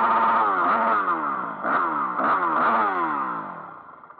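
Enduro motorcycle engine heard from the bike itself, revved in repeated throttle bursts. Each time the pitch jumps up and then slides down as the revs drop. Near the end the engine eases off and the sound fades away.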